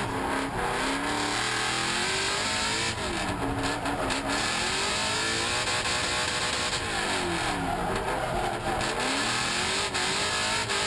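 Drift-built V8 Toyota Corolla's engine heard from inside the cabin, revving hard on and off through a drift, its pitch rising and falling several times.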